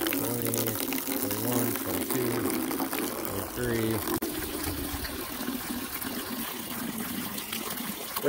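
A thin stream of water from a garden-hose return line pouring into a plastic bucket, filling it at full flow.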